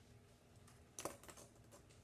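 Near silence with faint room tone, broken by a sharp light click about halfway through and a few fainter ticks after it.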